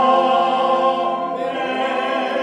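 Church congregation singing the closing chords of a hymn: one long chord is held, then about a second and a half in the voices move together to a new held chord.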